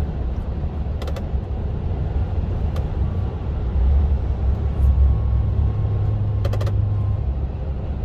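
Lorry cab at motorway speed: a steady low drone of the truck's engine and tyres on the road, with a few light clicks.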